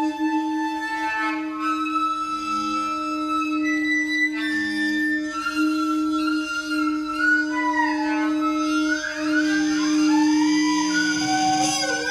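Hurdy-gurdy sounding a steady drone while a sopranino saxophone plays wavering, sliding lines above it in free improvisation. The upper lines glide upward in the second half, and the drone cuts out near the end.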